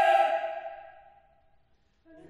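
Mixed choir's held chord releasing and dying away in the hall's reverberation, fading to near silence about a second and a half in.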